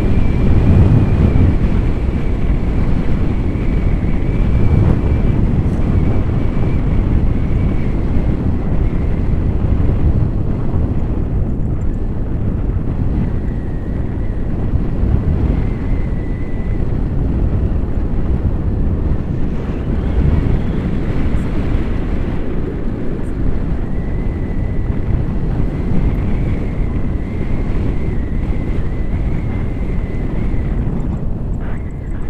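Airflow buffeting the microphone of a handheld camera on a tandem paraglider in flight, a steady rumbling rush with a faint steady high tone above it.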